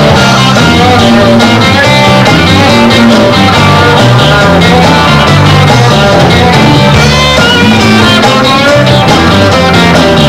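Live rock band playing an instrumental passage, loud and steady: electric guitar and bass over a drum kit, with no singing.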